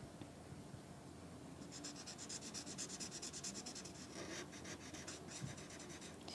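Red felt-tip permanent marker scribbling on paper, shading in a circle: faint, fast scratching of quick back-and-forth strokes, starting about a second and a half in.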